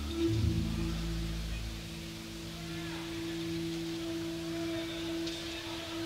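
Live jazz-rock band in an audience recording, holding a long sustained chord of steady notes; the lowest notes change about half a second in.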